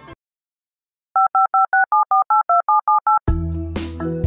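Touch-tone telephone keypad dialing: about eleven quick two-tone beeps in a rapid run, starting about a second in. Keyboard music with a sharp beat comes in just after the last beep, near the end.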